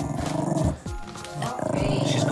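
A dog growling low in its crate over background hip-hop music with a deep repeating bass beat.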